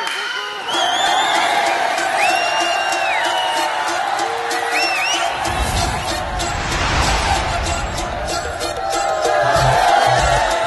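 Bollywood dance music with sliding high melody lines; a heavy bass beat comes in about halfway. Crowd voices sit underneath.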